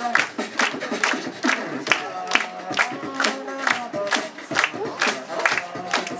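Two beatboxers performing vocal percussion through a PA: sharp snare-like hits about twice a second in a steady beat, with hummed, pitched vocal tones woven between them.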